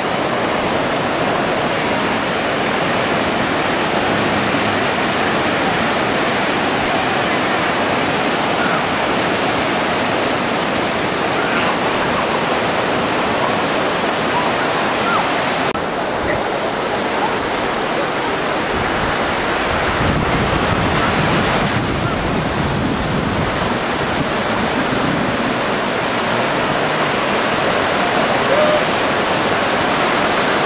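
Steady rush of ocean surf breaking on a sandy beach. Its character changes abruptly about halfway through, and a low rumble swells for a few seconds after that.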